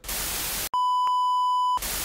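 TV static hiss, broken by a steady high electronic beep that lasts about a second, then static again: an edited static-and-tone transition effect.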